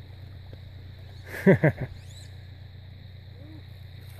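Steady wash of shallow creek water running over stones, with a short exclamation of two or three falling-pitch syllables about a second and a half in.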